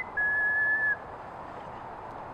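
A person whistling one long, steady high note that stops about a second in, leaving faint outdoor background.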